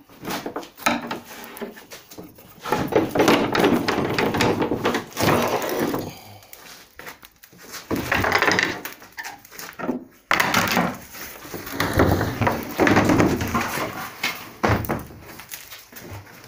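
Fibreglass bonnet moulding being worked free of its fibreglass mould: irregular cracking and knocking in bursts of a second or two as the part separates from the mould.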